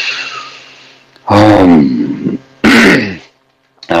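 A man clears his throat with a voiced, rough sound lasting about a second. Then, near the end, he lets out a short breathy sigh.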